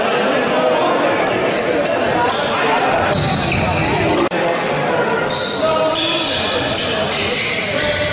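Futsal game sound in a sports hall: the ball being struck and bouncing on the wooden court, sneakers squeaking, and players' and spectators' voices echoing. The sound breaks off for an instant a little past halfway.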